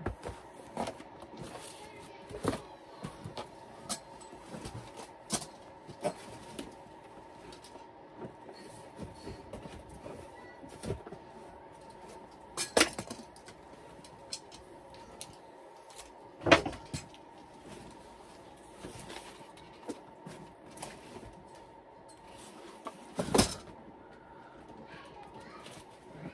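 Someone rummaging through things: irregular knocks, clicks and rustles of objects and fabric being moved and set down, with three louder thumps spread through, over a faint steady hum.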